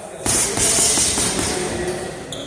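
Loud burst of music with drums and cymbals, cutting in about a quarter second in and dropping away near the end.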